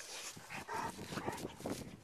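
A Cane Corso dog close to the microphone making a string of short, soft, irregular sounds.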